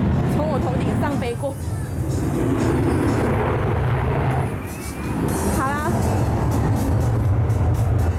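A plane flying over: a loud, steady low rumble, with a short dip about a second in and another just before the five-second mark.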